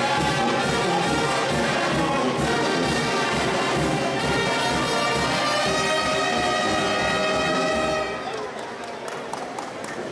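Brass band music with a steady low beat and held brass notes, stopping about eight seconds in, after which only fainter voices remain.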